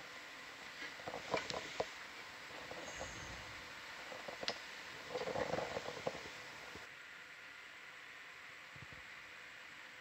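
Faint background room noise with a few scattered sharp clicks and a short muffled sound about five seconds in.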